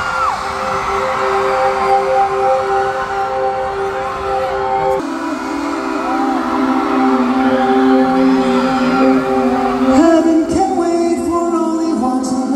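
Live concert music from the audience floor of an arena: sustained held chords that shift about five seconds in and again about ten seconds in, with the crowd cheering and screaming over them.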